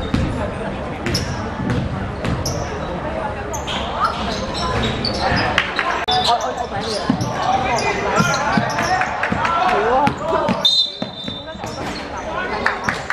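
Indoor basketball game: a ball bouncing on a wooden court with sharp knocks, over shouts from players and spectators echoing in the hall. Near the end a referee's whistle blows once, briefly.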